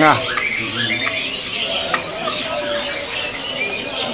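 A busy chorus of many caged songbirds calling at once: overlapping short, high chirps and whistles that never stop.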